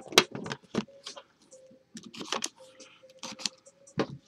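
Hands handling an Immaculate Collection football card box: a string of sharp, irregular clicks and taps as a small cardboard card box is taken out of the rigid black outer box.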